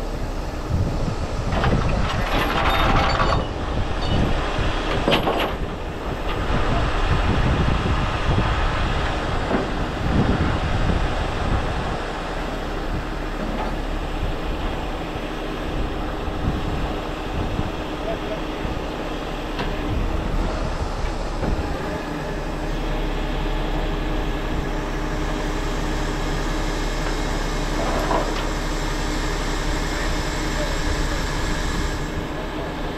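Heavy diesel engine of a Peterbilt 389X rotator wrecker running steadily while the rotator's hydraulics lift a trailer. A few short, loud rushes of noise come in the first several seconds and a smaller one near the end.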